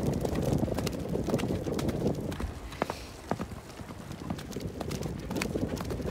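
Hoofbeats of a horse cantering on a sandy track, a steady run of thuds.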